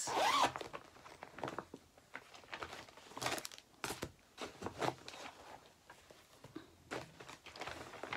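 A zipper pulled in several short rasping runs, with rustling and handling noise, as a zippered project bag is opened and gone through.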